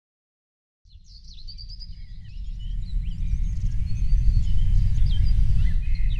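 Birds chirping and trilling over a loud low rumble, fading in about a second in and growing louder.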